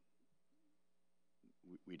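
Near silence: room tone with a faint steady hum during a pause in speech, with a man's voice starting again near the end.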